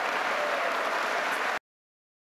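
Audience applauding, a steady wash of many hands clapping that cuts off suddenly about a second and a half in.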